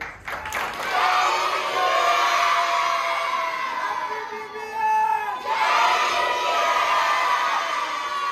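A large crowd of children cheering and shouting together in two long rounds, the second starting about five and a half seconds in.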